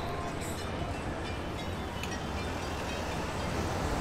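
Steady city street traffic noise, a continuous low rumble with no single event standing out.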